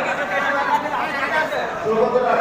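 Chatter of a crowd: many people talking at once, their voices overlapping with no break.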